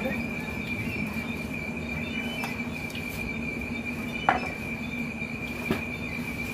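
Night insects trilling steadily at a high pitch, over a low steady hum. Two short clinks of tableware, one a little past four seconds in and a softer one near the end.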